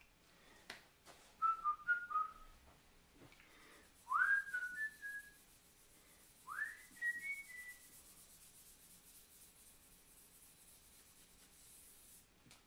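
A person whistling three short snatches of tune, a few notes each; the second and third start with a quick upward slide. Faint, steady scratching of rosin being rubbed along a cello bow's hair runs underneath.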